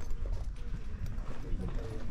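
Footsteps on stone paving at a walking pace, clicking and knocking, over a low rumble, with faint voices in the background.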